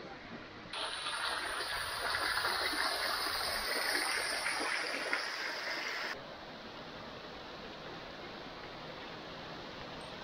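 Water falling in many thin streams over the top of a wall and splashing below, a steady hiss that starts about a second in and cuts off abruptly after about six seconds, leaving a quieter outdoor background.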